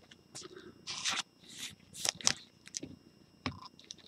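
Trading cards being handled in gloved hands, sliding and scraping against one another: a few short, quiet rustles and scrapes, the clearest about two seconds in.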